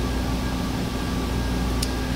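Steady room tone: a low hum and hiss with a few faint steady tones, like ventilation or air-conditioning noise, and a faint click near the end.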